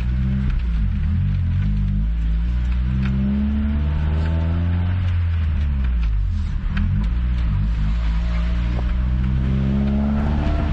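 Honda Prelude's H22A1 2.2-litre VTEC four-cylinder engine heard from inside the cabin while driving, its note rising and falling in pitch as the car speeds up and slows, with a brief dip about six and a half seconds in. The engine is running on freshly set ignition timing.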